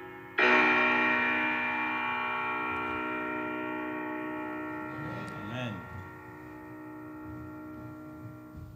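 Closing chord on a grand piano, struck about half a second in and left to ring, dying away slowly over several seconds at the end of the song.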